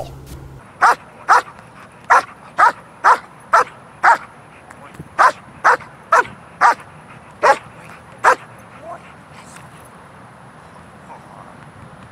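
A dog barks about thirteen times in quick succession, roughly two barks a second with a short break in the middle, then stops a few seconds before the end. It is a high-drive dog barking for its ball while being made to hold its position.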